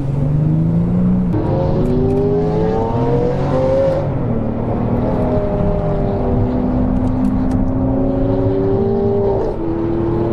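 Car engine heard from inside the cabin, accelerating with its pitch rising. It changes up a gear about a second in and climbs again until about four seconds in, then runs steadily at cruising speed.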